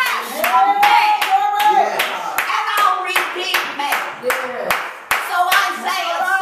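Hands clapping in a steady rhythm, about three claps a second, with voices calling out over the clapping.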